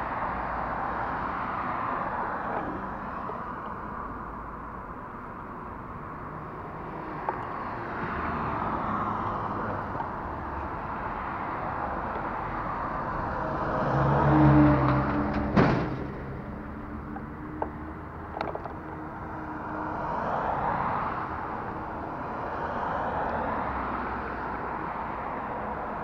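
Road traffic passing one vehicle at a time, each pass a swell of tyre and engine noise that rises and fades. The loudest pass, just past halfway, is a flatbed tow truck with its engine hum, followed by a single sharp click.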